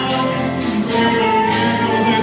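Live bolero band playing: acoustic guitars strumming, with a flute holding long notes over them.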